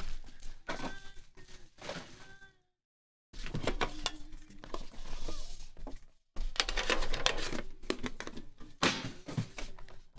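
Trading-card box packaging being handled: rustling, scraping and light knocks as the lid comes off the outer box and the inner box is lifted out and set down. The sound cuts out completely for under a second near three seconds in.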